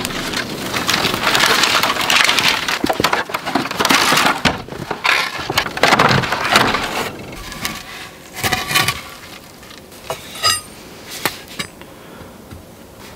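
Bundles of thin hand-split wooden shingles clattering and rustling as they are carried and stacked, loudest in the first half and quieter with scattered clicks later.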